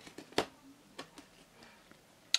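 Snap-on plastic deli-cup lid being pried off by hand: a few sharp plastic clicks and snaps, the loudest about half a second in.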